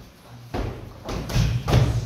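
Gloved punches landing with dull thuds during gym training. The first half-second is quiet, then there is a blow about half a second in, with two more close together near the end; the last is the loudest.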